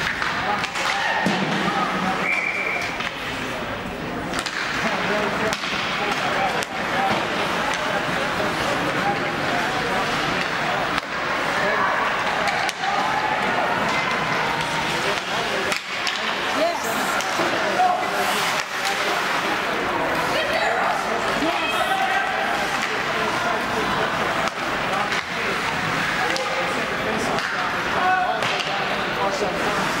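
Ice hockey play in an indoor rink: sticks and puck clacking and knocking at irregular moments over a steady background of indistinct voices from spectators and players.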